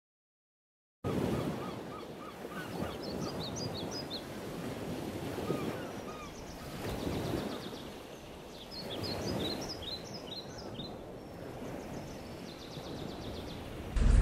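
Outdoor ambience that starts about a second in: a steady rushing background noise with birds calling over it. First comes a quick run of repeated chirps, then higher twittering calls and short trills at intervals.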